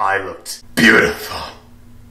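A man's wordless vocal noises of effort: a short grunt at the start, then a longer, louder strained sound just under a second in that trails off.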